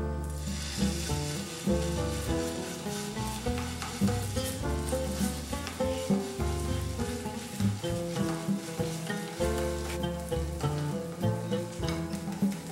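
Rice-flour dough sizzling on a hot, oiled flat griddle pan as it is pressed flat by hand into a rice pancake. The sizzle starts as the dough goes down, under background music of plucked guitar.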